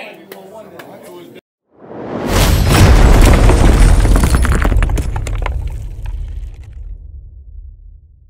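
Cinematic title-card impact effect: a short rising swell into a heavy boom with shattering, cracking debris over a deep rumble that slowly dies away. Crowd voices cut off abruptly just before it.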